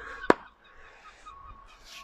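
A single sharp knock about a third of a second in: a hand-forged side axe being struck into a wooden chopping block to park it. Faint background follows.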